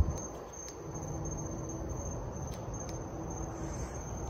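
Hunter Key Biscayne ceiling fans running on low speed: a quiet, steady rush of air with a faint motor hum, against a steady high insect trill.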